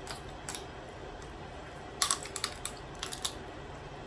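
Snow crab leg shell cracked and snapped apart by hand: one sharp crack about half a second in, then a quick run of cracks and clicks about two to three seconds in.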